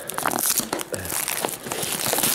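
Clear plastic film wrap on a boxed sandwich crinkling in irregular bursts as fingers pick and pull at it. The wrap resists being torn open.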